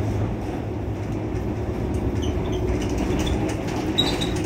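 Mercedes-Benz Citaro C2 city bus idling at a stop, a steady low hum.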